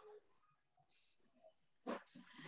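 Near silence: faint room tone over an online call, with a short, louder sound just before the end.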